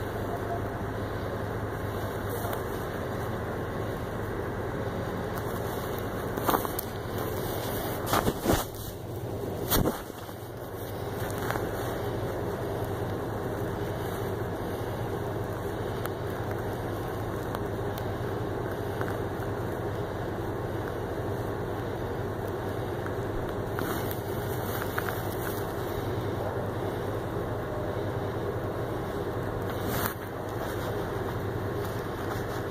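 Tow truck engine running steadily with a constant low hum, muffled through a phone carried in a shirt pocket. A few sharp knocks come between about six and ten seconds in.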